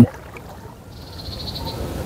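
Frogs calling faintly, with a thin, high, pulsing call coming in about halfway through.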